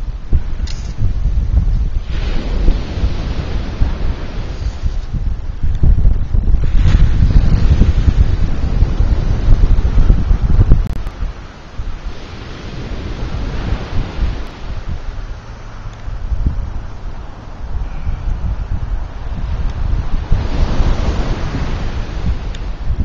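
Wind buffeting the microphone with a heavy low rumble, over the wash of surf that swells and fades several times.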